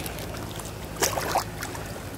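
Plastic sea kayak being paddled through very shallow water, with a short splash and scrape about a second in; the hull is touching the bottom.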